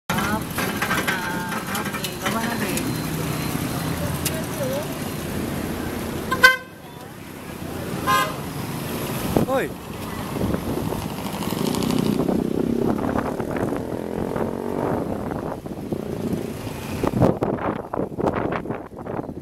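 A motorcycle tricycle riding with its engine and road noise heard from inside the sidecar, which stops abruptly about six and a half seconds in. A couple of short horn toots follow, then street noise and voices.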